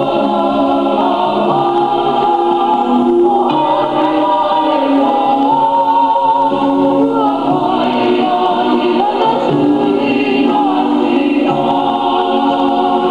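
A large group of men's and women's voices singing together in a choir, a Samoan vi'i (song of tribute), holding long notes in several parts.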